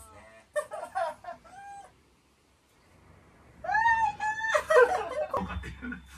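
A woman's high-pitched voice, not words: short cries with gliding pitch near the start, then after a brief hush a louder run of drawn-out, wavering cries. These are her involuntary vocal reactions while her neck and head are being manipulated in a chiropractic adjustment.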